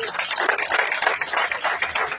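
Audience applauding: many people clapping at once in a steady, dense patter.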